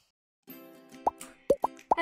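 Cartoon pop sound effects over soft background music: about half a second in, a held chord begins, and four quick rising 'bloop' pops follow in the second half.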